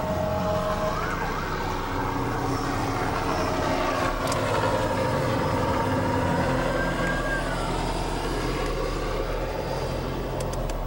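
Emergency vehicle siren, its pitch rising and falling, over the steady road noise of the car it is heard from.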